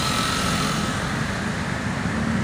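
Steady road traffic, mostly motor scooters and motorcycles riding past, with a faint whine that fades after about a second.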